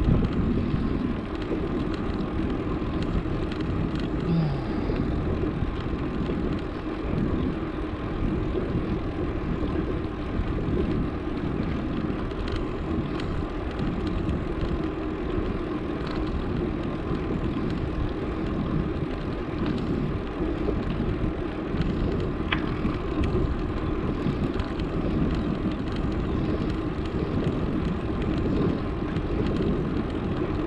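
Steady rush of wind over the camera's microphone, mixed with tyre noise from a bicycle being ridden on asphalt.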